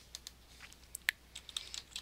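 Computer keyboard typing: a quick, irregular run of faint key clicks, with one louder keystroke about a second in.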